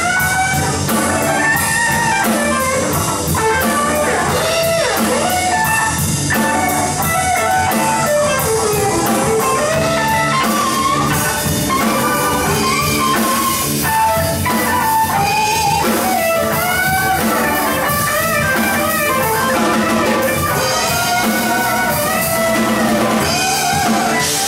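Live blues band playing an instrumental passage: a lead guitar line with notes bending up and down over drum kit and bass.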